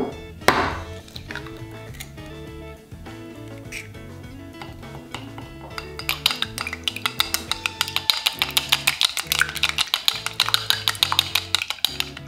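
An egg being cracked open with two sharp knocks at the start, then from about halfway chopsticks beating the egg in a small glass bowl in rapid clicks against the glass. Soft background music runs underneath.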